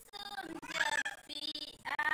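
A young woman singing unaccompanied, in short held notes with a slight waver, breaking off between phrases.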